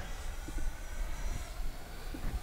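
Faint, steady whine of the Arrows RC L-39 Albatros's 50 mm electric ducted fan on 4S power, the jet flying at a distance, over a low rumble.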